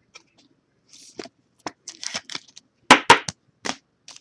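Trading cards and plastic card sleeves handled and set down on a pile: scattered rustles and light clicks, with a quick cluster of sharper clicks about three seconds in.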